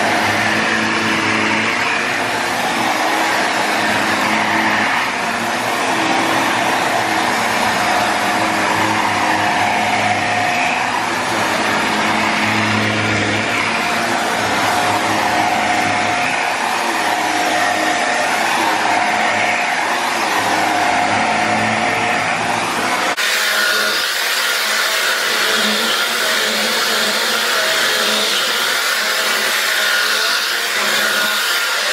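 Shark upright vacuum cleaner running on carpet, its pitch wavering as it is pushed back and forth. Its deeper hum drops away suddenly about three-quarters of the way through.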